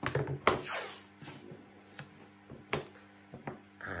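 Pieces of chipboard and tape being handled on a tabletop: a handful of sharp taps and knocks, the loudest about half a second in, with quieter handling noise between.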